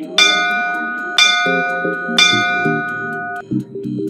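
Three bell-like countdown chimes, struck about a second apart, each ringing on, counting down the last seconds of a rest interval before the next exercise. Background music plays underneath.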